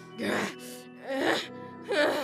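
A voice actor's strained, pained cries and grunts, two short ones and a third starting right at the end, over background music with steady held notes.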